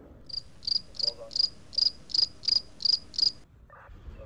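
Cricket chirping sound effect: nine evenly spaced high chirps, about three a second, cutting off suddenly shortly before the end. It is the 'crickets' gag, marking an awkward silence after an unanswered question.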